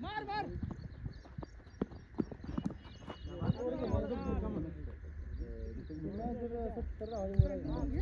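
Men's voices calling and shouting across an open cricket field, some near and some distant, over a steady low rumble, with a few faint clicks about a second in.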